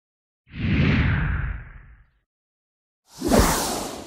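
Two whoosh transition sound effects for an opening title card. The first swells up about half a second in and fades over about a second and a half. The second comes about three seconds in and is brighter and hissier, with a quick drop in pitch at its start.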